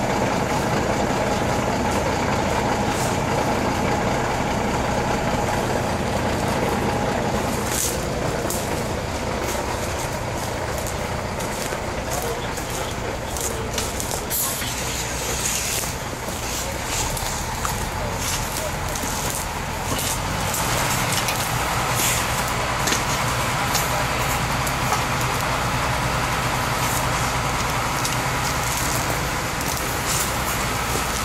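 Fire engine's engine running steadily at pump speed to drive its water pump, with the hiss of water spraying from a hose nozzle. The engine is loudest in the first eight seconds, then fainter.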